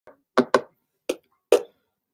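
Four short, sharp knocks in quick, uneven succession, with a fainter one just before them and dead silence in between.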